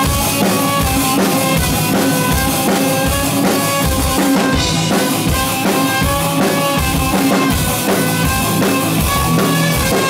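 A live rock band playing an instrumental passage: a drum kit keeping a steady bass-drum beat under electric bass and guitar, with a trumpet playing a melody of held notes over the top.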